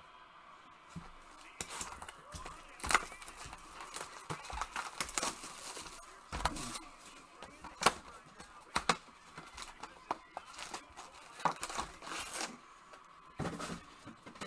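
Hands in gloves handling trading-card packs and boxes: crinkling and tearing of wrappers with scattered light clicks and taps throughout.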